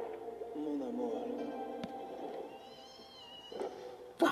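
An animated film's soundtrack heard through a laptop speaker: music with pitched, shifting tones, and a high wavering cry in the second half.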